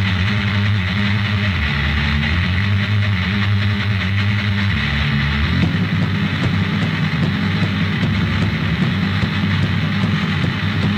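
Anarcho-punk song from a 1992 cassette tape: loud distorted guitar and bass playing the intro, with the band's playing turning busier and more percussive about halfway through.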